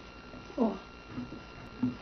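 A person's voice making three short, wordless vocal sounds, the first falling in pitch, over a faint steady hum.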